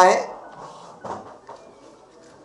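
A man's voice finishing a word, then a pause filled with low room noise and a couple of faint, short knocks about a second in.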